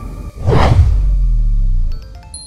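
Channel-ident transition sound effect: a whoosh about half a second in, over a deep low rumble whose tones slide downward and hold until the end.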